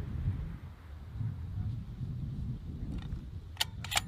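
A low, irregular rumble, then two sharp metallic clicks near the end as the bolt of the suppressed sniper rifle is handled.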